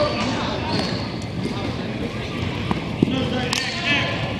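Echoing ambience of a large indoor sports hall: indistinct voices of players and onlookers with scattered thumps and a few sharp knocks in the second half.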